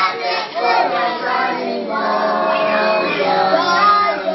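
A group of children singing together, loud and continuous.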